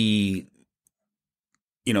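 Speech with a drawn-out syllable for about half a second, then cut off into more than a second of dead silence, with speech starting again near the end.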